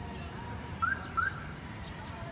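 Two short, rising whistled chirps about half a second apart, most likely a bird calling, over a steady low outdoor rumble.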